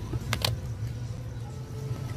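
Two quick clicks close together about half a second in, as a plastic cup of ice water is picked up from the table, over a steady low hum.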